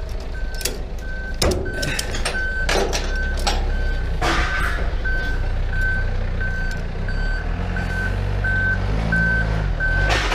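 A vehicle's reversing alarm beeping steadily at one high pitch, nearly two beeps a second, over a diesel engine running. Sharp metal clanks of a ratchet strap buckle being handled come in the first half.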